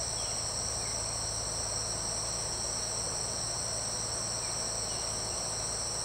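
A steady chorus of insects trilling at several high pitches, unbroken and unchanging, over an even low rushing noise.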